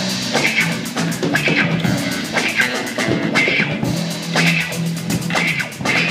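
Live rock band playing: electric guitar, electric bass and drum kit, with a steady bass line under evenly spaced cymbal strokes.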